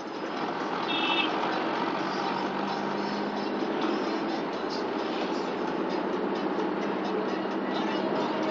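Steady road and engine noise of a moving car heard from inside the cabin, swelling slightly in the first half-second. About a second in comes a brief high-pitched tone.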